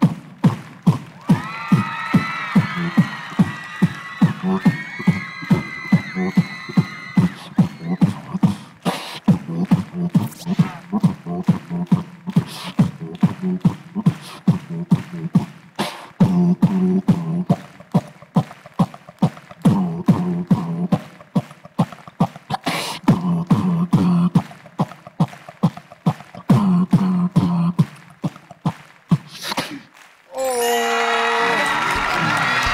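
Human beatboxing into a handheld microphone: a steady beat of mouth-made kick and snare clicks with a low hummed bass line. For the first several seconds a high vocal melody is layered over the beat.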